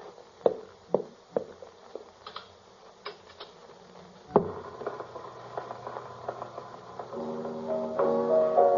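Radio-drama sound effects of a jukebox being played: a few footsteps, a nickel clinking into the coin slot, and a single loud clunk of the mechanism about halfway through. Piano music starts up near the end.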